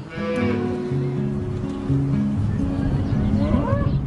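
Cattle mooing: one call at the start and a shorter rising one near the end, over background music with steady low notes.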